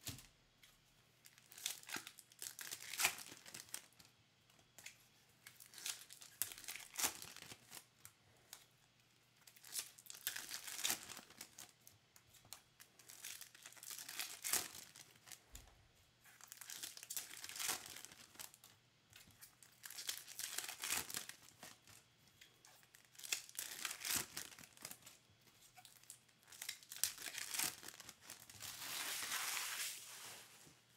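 Foil wrappers of Topps baseball card packs being torn open and crinkled, with the cards handled and stacked. It comes in bursts every few seconds, with a longer tear near the end.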